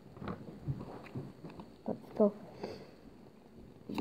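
Faint, scattered rustles and light clicks of a stack of Pokémon trading cards being handled and shifted in the hands.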